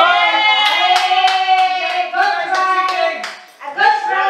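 Hand clapping mixed with raised voices drawn out into long cries, loud in a room; the clapping and cries break off briefly near the end.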